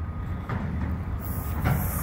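Steady low outdoor background rumble, with a brief high hiss in the second half.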